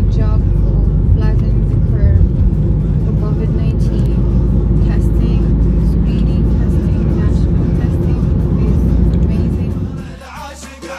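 Steady low road and engine rumble inside the cabin of a moving Range Rover SUV, falling away just before the end.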